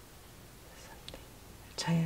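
Quiet room with a few faint clicks of tarot cards being handled, then a woman starts speaking near the end.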